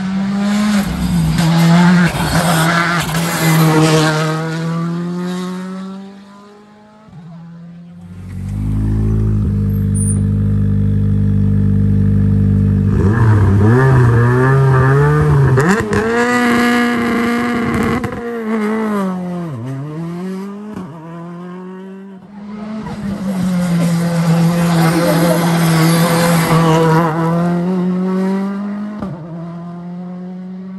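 Rally car engines. First a car passes at speed with its engine note rising and falling. In the middle a Citroën C3 Rally2 sits at the start, idling steadily and then revving up and down. Near the end another car passes at full throttle.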